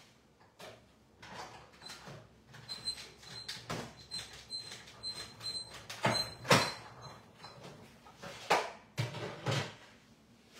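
A 3D embossing folder with card stock being cranked through a hand-cranked die-cutting and embossing machine: irregular creaks and knocks, with a faint on-and-off high squeak in the middle and the sharpest knocks in the second half, on a wobbly table.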